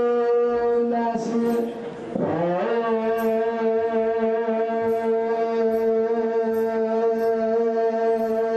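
A wind instrument holding one long, steady note. A little after a second in the note wavers and dips, then slides back up to the same pitch and holds again.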